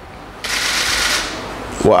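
Sheet of paper rustling close to a microphone as it is moved and turned over: one noisy rustle of about a second, starting about half a second in. A man's voice starts speaking at the very end.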